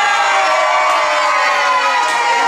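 A group of party guests, children among them, holding a long, loud vocal note together, its pitch sinking slightly, around a birthday cake with lit candles.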